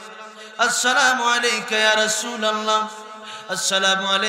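A man chanting a sermon in a drawn-out, melodic sung style, holding long wavering notes, with a new phrase starting about half a second in and another near the end.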